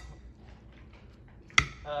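Metal kitchen tongs tossing seasoned raw chicken wings in a glass mixing bowl, faint at first, with one sharp click of the tongs against the glass about one and a half seconds in.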